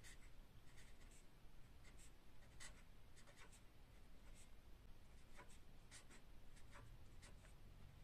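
Marker pen writing on paper: a string of faint, short pen strokes.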